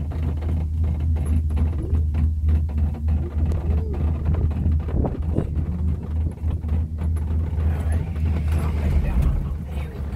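Loud, steady low rumble inside a moving cable-car gondola, fluttering in level.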